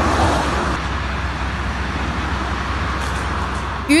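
Steady rumble and hiss of road traffic, even in level with no distinct events.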